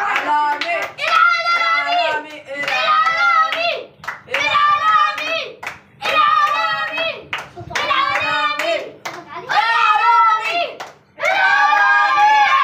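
A group of boys chanting in short repeated phrases, one after another with brief gaps, while clapping their hands.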